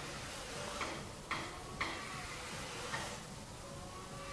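Four short, sharp clicks as a 4-inch full-range speaker driver's frame is seated into the cutout of an MDF speaker cabinet.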